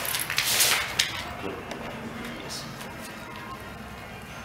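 A dog running across a rubber-matted floor while trailing its leash: a short scuffling hiss with a few sharp ticks in the first second, then quieter.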